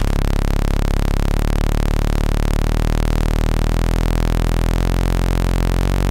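Eurorack synth oscillator sounding a sustained buzzy tone that jumps to a new pitch about once a second, note after note, as each note is triggered from MIDI and sampled in turn for a multisampled instrument.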